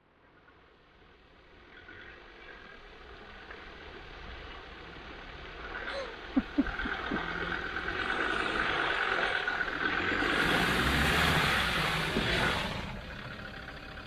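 Land Rover Defender's engine running as it drives along a muddy, rutted track, fading in and growing steadily louder as it approaches. There are a few knocks about six seconds in and a burst of hiss near the end.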